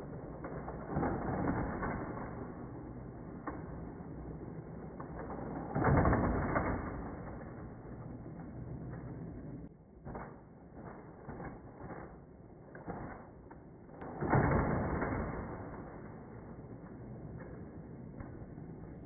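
Hot Wheels Criss Cross Crash track's motorized boosters running with a muffled mechanical whir, swelling louder about a second in, around six seconds and again around fourteen seconds. Between about ten and thirteen seconds comes a run of short clicks and clacks of die-cast toy cars and plastic track.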